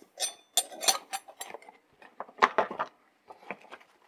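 Steel open-end wrenches clinking against each other as they are handled and slotted back into a canvas tool roll: a string of sharp metallic clicks in small clusters, some with a brief ring. Near the end, a soft rustle of the canvas roll being folded.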